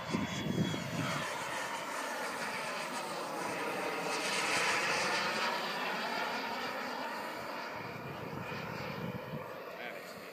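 Radio-controlled model jet flying past overhead: a rushing jet sound that builds to its loudest about five seconds in and then fades away.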